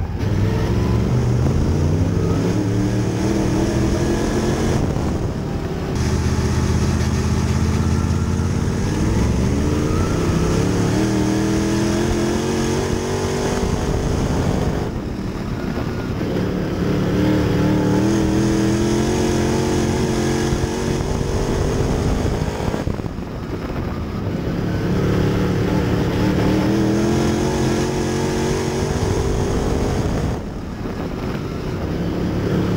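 Sportsman dirt late model's V8 engine at racing speed, heard from inside the car: the note climbs through each straight and drops three times as the driver lifts for the turns, then picks up again.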